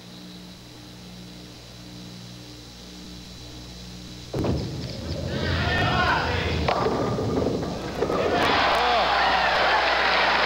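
A faint hum, then about four seconds in a sudden thud as the bowling ball meets the lane, and a low rumble as it rolls. Crowd voices rise as it reaches the pins, and near the end the crowd breaks into loud cheering at the strike.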